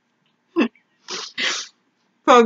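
Stifled, breathy laughter from people whose mouths are stuffed with marshmallows: one short burst about half a second in, then two longer breathy bursts about a second in.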